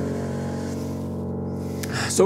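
Grand piano chord ringing on and slowly fading. It was struck just before and is held with no new notes played.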